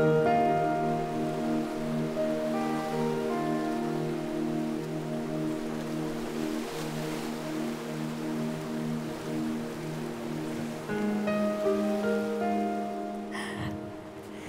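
Background music with held chords and a slow melody.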